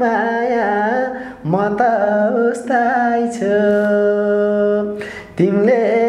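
A man singing a melody without accompaniment, pausing briefly for breath twice and holding one long steady note a little past the middle.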